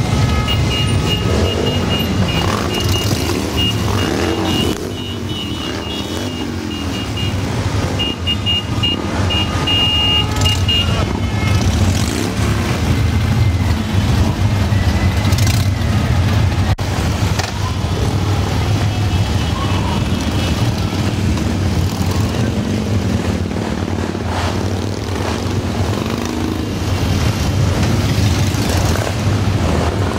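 A column of Harley-Davidson V-twin motorcycles rumbling past at low speed, the engines overlapping in a steady low drone, with throttles blipped here and there in rising and falling revs.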